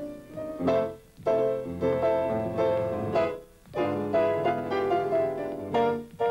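Piano playing a slow, lyrical melody in short phrases, with brief breaks about a second in and just past the middle.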